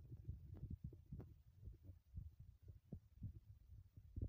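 Near silence with a faint low rumble and irregular soft thumps, several a second: noise on a handheld phone's microphone while walking.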